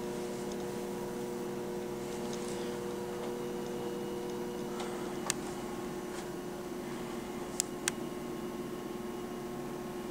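Quiet room tone: a steady low hum, one of whose tones stops about halfway through, with a few faint, short clicks in the second half.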